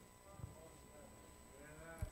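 Near silence: room tone with faint wavering pitched sounds and a small click about half a second in.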